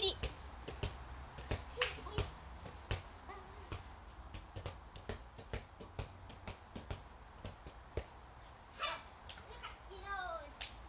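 Irregular sharp taps and clicks, one or two a second, with faint children's voices in the background.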